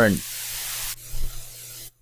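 Static hiss on a guitar recording playing back over a steady low hum; about a second in the hiss drops sharply as the noise-removal plugin starts filtering it out, leaving it much fainter.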